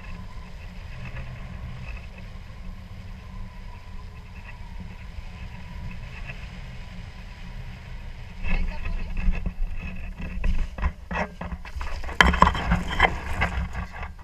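Wind rumbling on an action camera's microphone during a low tandem paraglider glide, then from about halfway loud, irregular knocks, scrapes and thumps as the pair touch down and slide onto gravel, the camera jostled against harness and helmet.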